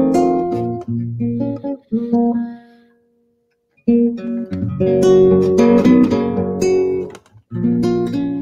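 Acoustic guitar being played: plucked notes and strummed chords ringing out, with a sudden break of under a second about three seconds in before the chords resume.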